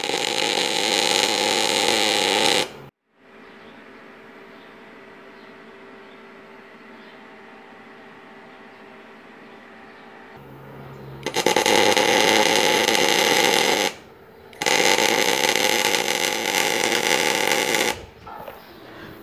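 MIG welding on steel truss tubing: the welding arc sizzles steadily in three runs of about three seconds each, every run stopping abruptly. The short beads are laid alternately on the top and bottom of the truss to keep it from bowing. Between the first and second runs only a much quieter steady hum is heard.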